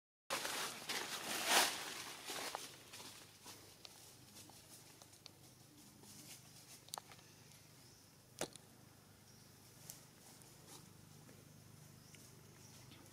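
Rustling for the first few seconds, loudest about a second and a half in, then a faint outdoor background broken by a few sharp, scattered clicks.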